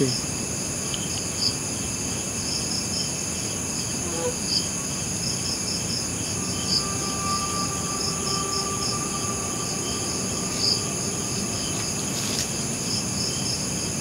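Night chorus of crickets and other insects: a steady high-pitched buzz with irregular chirping on top. A faint steady tone is heard for a few seconds in the middle.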